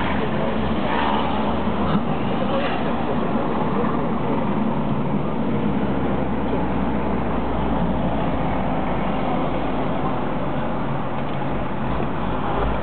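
Steady engine and road noise heard from inside a moving Mercedes taxi, with city traffic around it.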